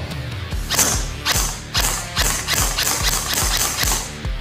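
Electric airsoft rifle (TTI 085M) firing a quick run of single shots, about ten sharp cracks spaced a third to half a second apart, starting under a second in. Background music with a steady beat plays under it.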